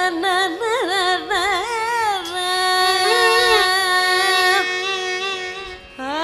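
Carnatic classical music: a woman sings a melody with quick oscillating ornaments over a steady drone, with one long held note in the middle.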